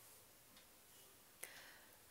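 Near silence: faint room tone with a few soft ticks and one sharp click about one and a half seconds in.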